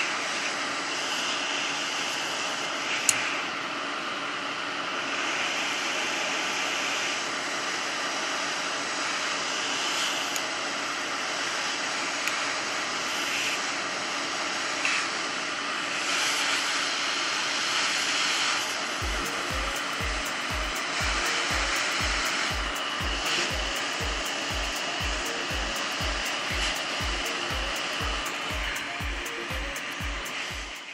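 Hot-air rework station blowing a steady rush of air with no nozzle fitted, set to 400 °C and 80% airflow, heating a phone motherboard's metal shield to loosen its solder. A low thump about twice a second joins in from about two-thirds of the way through.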